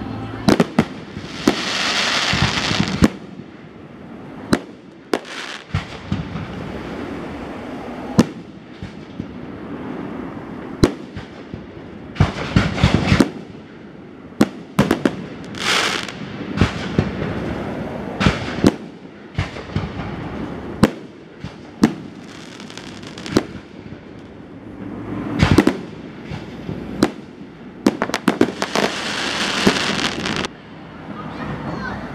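Aerial fireworks shells launching and bursting: a long run of sharp bangs at irregular spacing, a tight cluster of them near the end, with several longer hissing rushes, the first about two seconds in.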